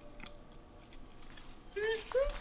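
Faint close-up chewing of a soft biscuit with honey: wet mouth sounds and small clicks. A short voiced sound starts near the end.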